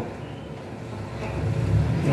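A low rumble that builds louder toward the end.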